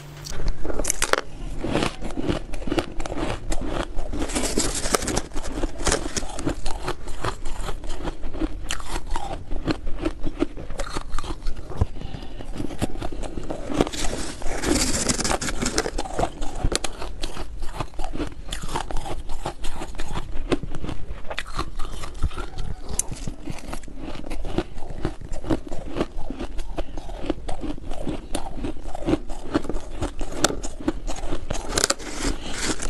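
Close-miked crunching and chewing of powdery white ice, a dense, continuous run of rapid crisp crunches with no pauses.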